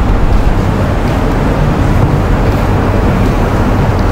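Steady, loud background rushing noise with a low, even hum underneath, with no speech.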